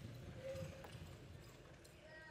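A horse's hooves thudding dully on soft arena dirt as it lopes, the beats easing off as it slows toward a walk.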